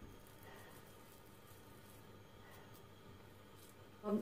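Near silence: room tone, with faint soft sounds of oiled hands rolling raw minced meat into a ball.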